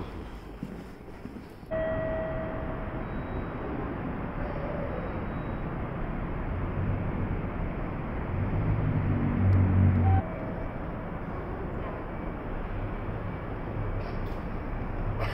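Outdoor city ambience: a steady noise of distant traffic, with a low rumble that builds and then stops abruptly about ten seconds in.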